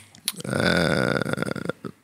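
A man's low, drawn-out, creaky vocal sound, a hesitant "ehh" lasting about a second, with a few faint mouth clicks near the end.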